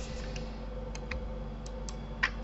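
About five light, scattered clicks from working a computer keyboard and mouse, over a steady low electrical hum.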